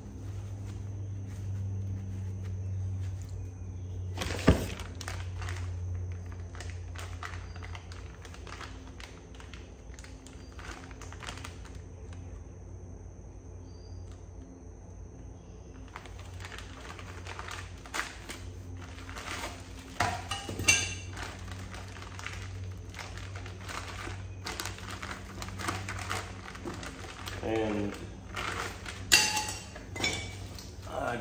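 Steel hand tools, a spanner wrench among them, clinking and knocking against the rear shock's preload collars during a shock adjustment. There is one sharp, loud metallic knock about four seconds in, then a busier run of clinks and taps through the second half, over a steady low hum.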